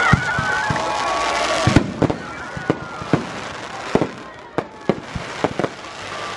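Fireworks going off: shells launching and bursting in a quick, irregular series of bangs and crackling pops, several a second.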